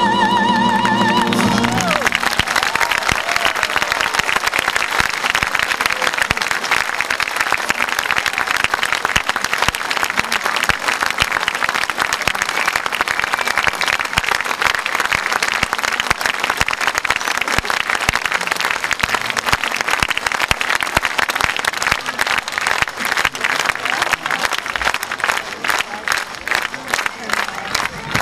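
The final held note of an operatic soprano and tenor duet, sung with vibrato over a symphony orchestra, cuts off about a second and a half in. A large audience then applauds, the clapping thinning slightly near the end.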